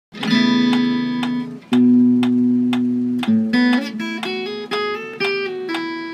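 Acoustic guitar played fingerstyle in a slow tune: ringing chords sounded about every second and a half, then a run of single melody notes over the bass from about halfway in. A light, even click about twice a second keeps time throughout.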